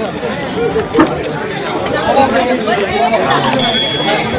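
Crowd chatter: several voices talking at once, with no one voice standing out.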